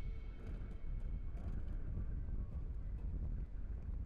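Wind buffeting an outdoor microphone: a steady low rumble, with a few faint clicks.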